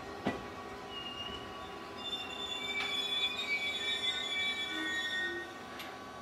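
Express passenger train coaches rolling away, with a knock of wheels over a rail joint just after the start. From about two seconds in, the wheels squeal in several high, shrill tones, fading out shortly before the end.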